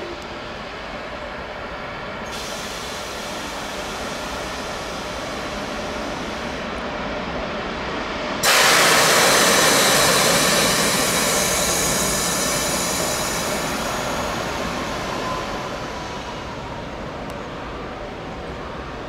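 A passenger train running through the station: a steady rail rumble that slowly grows, then a sudden loud rush of wheel and air noise about halfway through as the train reaches the microphone, fading gradually towards the end.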